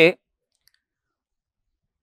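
A man's voice finishing a word, then near silence for the rest, broken only by one faint tick.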